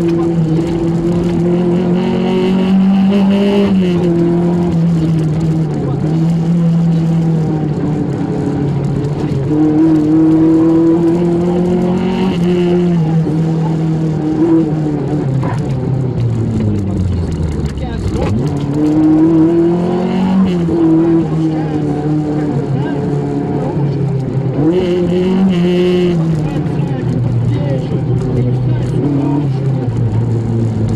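Lancia Beta Montecarlo's four-cylinder engine heard from inside the cockpit under rally driving. Its pitch rises and falls with throttle and gear changes. About sixteen seconds in, the revs drop away steeply, then climb again sharply.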